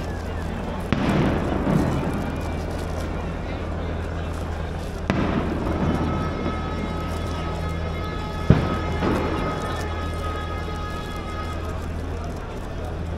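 Three sharp firecracker bangs, about a second, five seconds and eight and a half seconds in, each echoing off the buildings with a short crackle after it. Underneath is a steady low hum and crowd noise.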